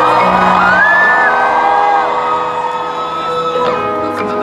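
Live concert music over an arena sound system: a sustained chord as a song begins, with the crowd whooping and screaming over it.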